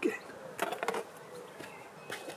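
A short burst of rustling from about half a second to one second in, over a faint, steady buzz.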